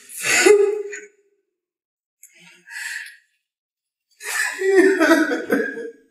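A woman crying in sobs: a sobbing cry at the start, a sharp breath drawn in the middle, then a longer broken crying stretch from about four seconds in.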